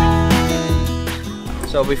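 Background music led by a strummed acoustic guitar, with regular strums.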